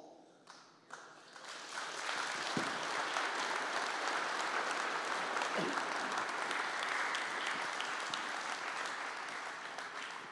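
Live audience applauding: the clapping starts about a second in, quickly builds to a steady level, and tapers off near the end.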